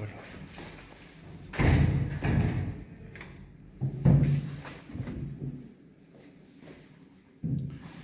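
Heavy hinged elevator landing doors thudding as they swing and shut, with two loud thuds in the first half and a smaller knock near the end.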